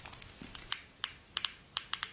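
Fingernails tapping and clicking on the plastic barrel of an eyeliner pen, close to the microphone: about eight crisp taps, unevenly spaced, some in quick pairs.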